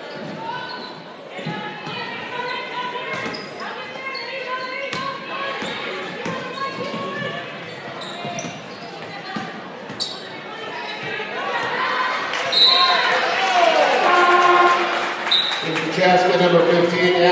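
Basketball bouncing on a hardwood gym floor amid the voices of players and spectators, echoing in a large gym. The voices grow louder near the end.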